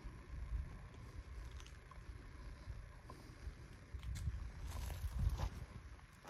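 Wind buffeting an outdoor microphone as an uneven low rumble, over a faint steady rush, with a few light clicks about four to five seconds in.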